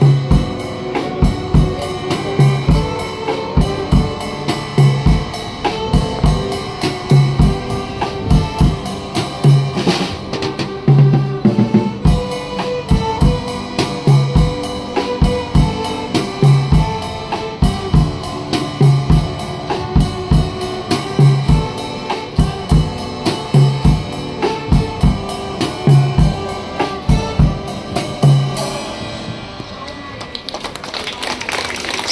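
Live ensemble of violins, keyboards, guitars and a drum kit playing a tune over a steady drum beat, with a regular bass-drum thump about once a second. The music stops just before the end.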